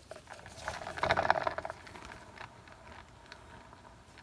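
Round turntable under a wet acrylic pour being spun by hand: a short rattling whirr about a second in, then faint scattered ticks as it keeps turning.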